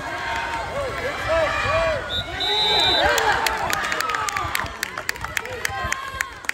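Poolside spectators shouting and cheering at a water polo game, with a single short, high referee's whistle blast about halfway through. Scattered hand claps follow through the second half.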